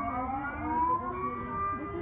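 Dutch public civil-defence warning siren sounding its monthly first-Monday test: one long wailing tone that rises slowly in pitch and then levels off.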